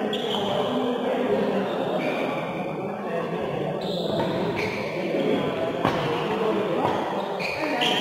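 Indistinct voices echoing in a large hall, with a couple of sharp knocks in the last few seconds.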